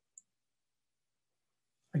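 Near silence, with one faint short click a fraction of a second in, then a man's voice starting at the very end.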